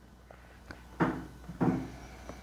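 Small handling sounds on a desk: a faint click, then two short knocks about half a second apart.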